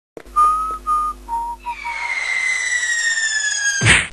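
Cartoon sound effects: a few short whistled notes, then a long whistle falling slowly in pitch, the classic falling sound, ended by a sudden crash just before the end.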